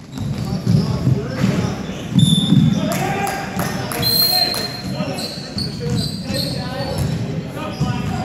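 Basketball being dribbled on a hardwood court during a game, with repeated bounces, short high sneaker squeaks and players' voices echoing in a large hall.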